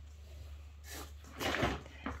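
Breathy, stifled laughter without voice, in two short bursts, the second the louder, over a low steady room hum.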